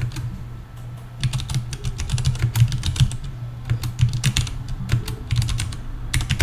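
Typing on a computer keyboard: a quick, irregular run of key clicks over a steady low hum.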